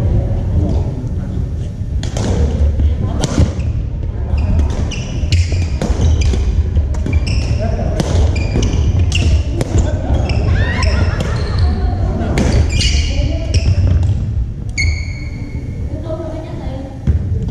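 Badminton play on a gym's hardwood court: rackets striking the shuttlecock in sharp knocks, and sneakers squeaking on the floor in short high chirps, all echoing in the large hall over a steady low rumble.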